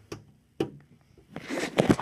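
Plastic scraping and rustling as the lid of a plastic pet-keeper box is tugged at. It ends in a few sharp clicks near the end, and the lid is stuck fast.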